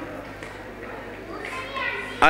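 A lull between phrases of speech: faint background voices over a steady low electrical hum, with a short faint voice rising near the end.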